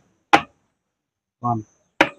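Two short, sharp snaps made by a hand beside a man's ear, about a second and a half apart, the kind used to check whether he can hear; a single short spoken word falls between them.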